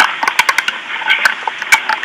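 Telephone handling noise: scattered clicks and knocks over a steady hiss on the phone line as the handset is passed to another person.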